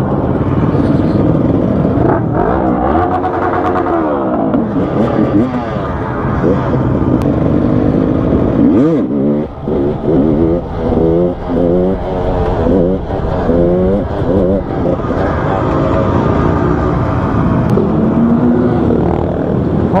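A dirt bike's engine heard from the rider's seat, revved up and down repeatedly with quick rises and falls in pitch, most busily in the middle stretch, over wind rush. The rider says the engine runs badly and suspects it is drawing false air through poorly sealed throttle flaps or the mount of the fuel-injection unit.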